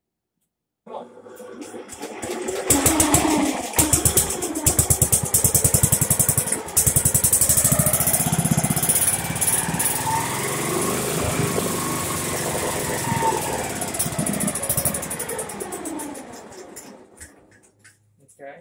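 Riding mower's small engine, its cylinder head just swapped, cranking over and catching about three seconds in, then running with a fast, even firing beat whose speed wavers, before fading and stopping near the end. It runs again after the head swap, but the engine is due for a rebuild.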